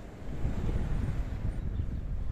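Wind buffeting the microphone, getting louder about a quarter second in, over the low running of a bus engine.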